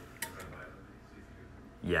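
Oven control knob on a stainless-steel range being turned, with a single faint click about a quarter second in, over quiet room tone.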